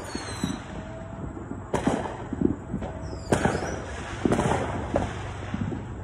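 Fireworks going off: several sharp bangs a second or so apart, each trailing off in an echo, with a faint falling whistle near the start.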